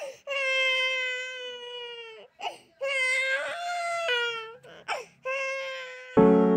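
Infant crying: several long, high-pitched wailing cries, broken by quick gasps for breath.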